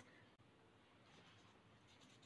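Very faint scratching of a colour pencil shading back and forth on paper over a leaf laid beneath the sheet; near silence otherwise.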